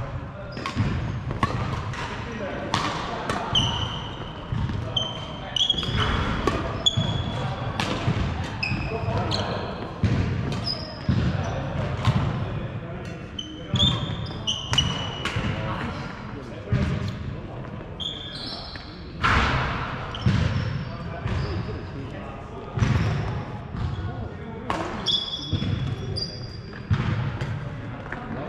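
Badminton doubles rally on a wooden sports-hall floor: repeated sharp racket strikes on the shuttlecock and footfalls, with many short high squeaks of court shoes on the floor, in a large reverberant hall.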